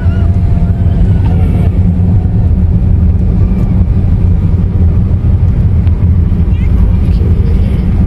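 Steady low rumble of a car driving slowly, heard from inside the cabin: engine and road noise.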